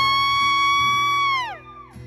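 Live country band with acoustic guitar, under a high voice holding one long steady note that falls away about a second and a half in, leaving the instruments playing more quietly.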